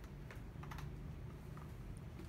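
A few faint, irregular light clicks and scratches of a watercolor brush working on cold-pressed watercolor paper, over a low steady hum.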